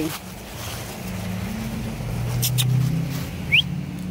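A motor vehicle's engine droning low and steady, slowly getting louder, with a couple of faint clicks and a short rising chirp near the end.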